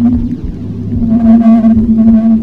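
Loud, low droning sound-design soundscape of held tones, with a higher sustained tone entering about a second in and breaking off briefly just before the end.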